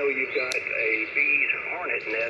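Voice of a distant amateur radio operator coming through a portable transceiver's speaker, thin and cut off in the highs as single-sideband speech is, with one short click about half a second in.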